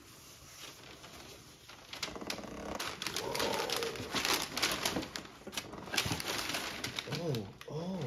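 Cardboard box and plastic wrapping being handled: quiet for about two seconds, then steady rustling and crinkling as a plastic-wrapped package is pulled out of the box.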